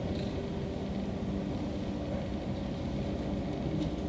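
Steady low rumble with a faint hum: the room tone of a hall picked up through the microphone.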